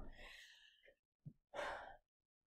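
Near silence with a soft breath drawn in near the end, just before the next sentence, and a faint tick a little past the middle.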